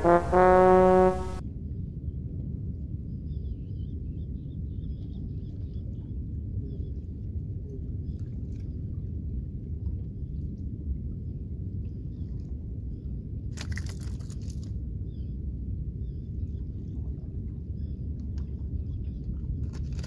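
A short brass music sting in the first second or so. After it comes a steady low rumble of wind on the microphone, with a brief scratchy noise about 14 seconds in.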